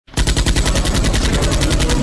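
Rapid machine-gun fire sound effect, about a dozen shots a second in an even stream, starting suddenly and cutting off abruptly.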